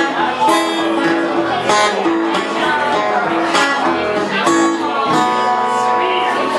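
A 1971 acoustic guitar played solo: a picked melody of ringing single notes and light strums, the notes changing about twice a second.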